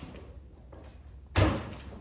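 A single dull thud of a thrown small ball striking something, about one and a half seconds in, after a quiet stretch.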